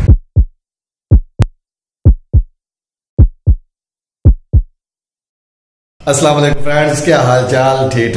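Heartbeat sound effect for a logo intro: five double thumps (lub-dub), deep and short, about a second apart, then a pause. About six seconds in, a man's voice begins.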